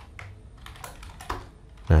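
Typing on a computer keyboard: a string of separate key clicks as code is entered.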